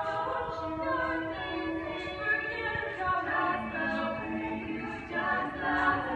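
All-female a cappella group singing in close harmony: several voices holding chords under a lead singer, with no instruments. The singing swells louder about five seconds in.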